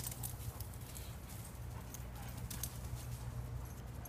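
Irregular light crackles and clicks of dry leaves and loose dirt being disturbed, over a steady low hum.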